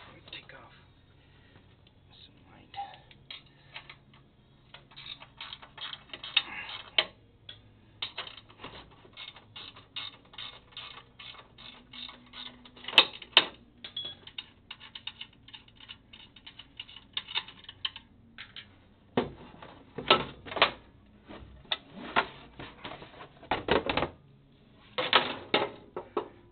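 A 13 mm wrench working the hex head machine screws out of a GS-X pinsetter's sheet-metal pin deflector board. It makes long runs of quick metallic clicks, with louder clanks near the end.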